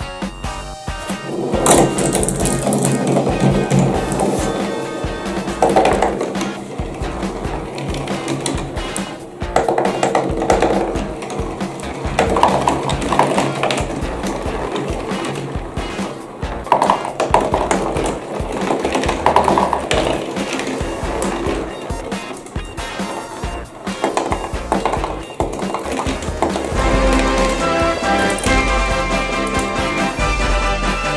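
Background music over glass marbles rolling and clattering down the tracks of a cardboard marble run, with louder swells of rolling every few seconds.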